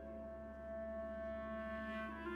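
Clarinet holding one long steady note over a quieter sustained low note in an orchestral passage.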